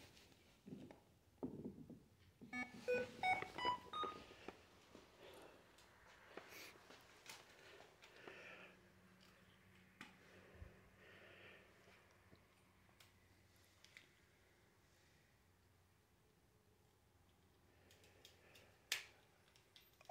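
A ghost-hunting sensor box gives a short run of four or five electronic beeps stepping upward in pitch. Near silence and a few faint clicks follow.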